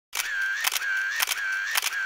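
A rapid series of sharp clicks, about two a second, each followed by a short steady high whine.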